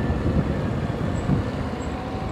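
Motorcycle riding along a road: steady engine running and road noise as a low rumble.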